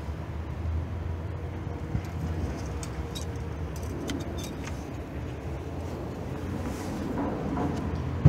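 A steady low mechanical hum with a few faint clicks.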